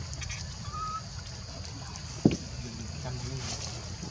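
Short animal calls, a brief whistle-like note and a few squawks, with one sharp knock a little past two seconds in, over a steady high-pitched drone of outdoor ambience.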